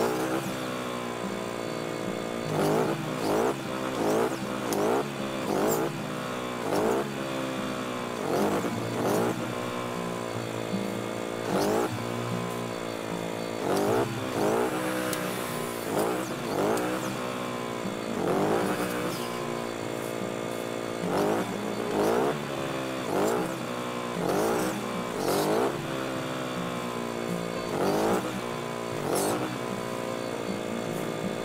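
Chainsaw engine running steadily and revved up again and again in short surges, roughly every one to two seconds, as it cuts through branches.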